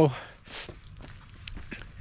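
Footsteps of a man walking outdoors, with a short noisy burst about half a second in and a few faint ticks later.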